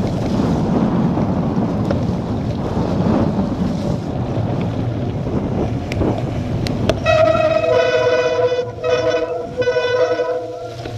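Wind and tyre noise from a bicycle riding fast over a wet, muddy track, with a couple of sharp clicks; from about seven seconds in, bicycle brakes set up a loud honking howl that cuts out and comes back twice as the bike slows.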